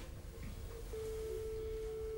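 A telephone line tone heard from a corded handset: one steady single-pitch tone that starts about a second in and lasts about a second and a half.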